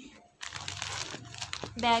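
Clear plastic packaging bag crinkling as it is handled and turned over. The rustle starts about half a second in and lasts just over a second.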